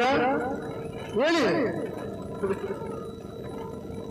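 A man's voice through a microphone and PA, trailing off, then one short drawn-out call with its pitch rising and falling about a second in, followed by a pause with a faint steady hum.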